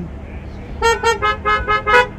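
Car horn tooting in a quick run of short honks, starting a little under a second in, given as an "amen" in reply to the preacher.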